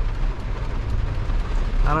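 GMC pickup truck's engine running, a steady low rumble heard inside the cab as the truck is put in reverse to back its trailer.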